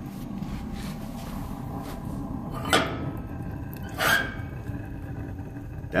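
Homemade waste-oil heater, a coal parlor stove with an oil-drip burner pot, running hot with a steady low roar. Two short sharp knocks, about three seconds in and again about a second and a half later.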